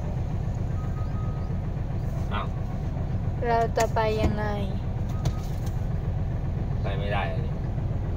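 Truck's diesel engine running at low speed, a steady low drone heard from inside the cab.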